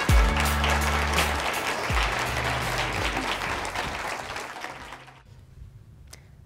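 Intro music finishing with a couple of low bass hits, over audience applause that fades away by about five seconds in.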